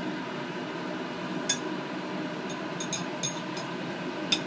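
Light metallic clicks of steel tweezers against a plate, once about a second and a half in and then a quick cluster near the end, over a steady fan-like hum.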